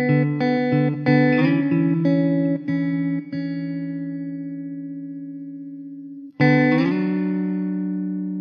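Background music on a plucked guitar: a quick run of notes that ring out and fade, then a new chord struck about six and a half seconds in that rings on.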